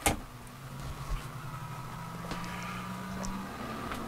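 A switch clicks on, and a ventilation fan motor starts and runs with a steady low hum.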